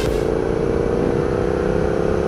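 A 2013 Hyosung GT650R's V-twin engine, fitted with an aftermarket Danmoto exhaust, running at a steady road cruise, its note easing down a little in pitch.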